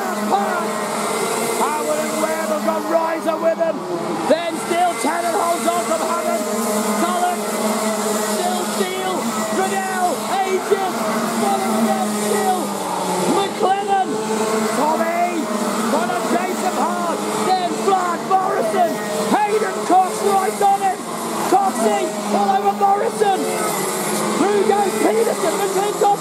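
A pack of Rotax Max 125 single-cylinder two-stroke kart engines racing. Their pitch keeps rising and falling as the karts accelerate out of the corners and lift off into them.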